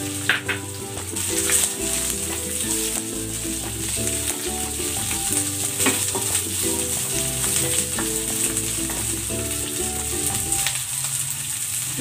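Garlic, onion and bell pepper pieces sizzling in hot oil in a nonstick wok, with a wooden spatula stirring and scraping them now and then. Steady pitched notes that change every half second or so sound underneath.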